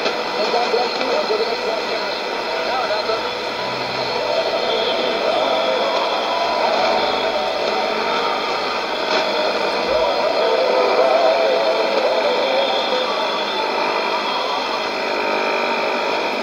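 WWCR shortwave broadcast on 4840 kHz from a Sony ICF-2001D receiver's speaker: an indistinct voice buried in steady static hiss with faint whistles, the sound thin and tinny.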